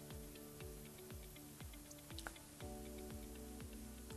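Faint background music: soft held chords over a regular ticking beat, the chord changing about two and a half seconds in.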